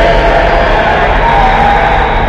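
Loud, dense horror-intro soundtrack: music with a crowd-like clamour of voices over it, with no let-up.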